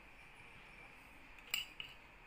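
A metal spoon clinks against a china plate while scooping cooked meat: one sharp clink about one and a half seconds in and a smaller one just after, over faint room tone.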